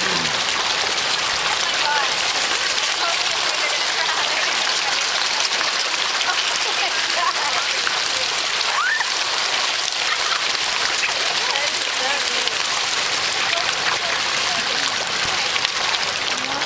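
A dense crowd of koi churning the pond surface, a steady splashing patter of water like rain that runs on without a break.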